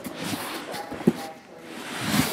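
A cardboard shipping case being handled and turned on a tabletop, with one sharp knock about a second in, under faint voices from a radio in the background.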